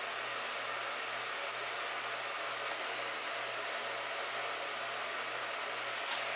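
Steady background hiss with a faint low hum, even throughout and with no distinct events.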